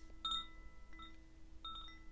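Faint background meditation music: a low held tone with soft, high, chime-like notes ringing out about every two-thirds of a second.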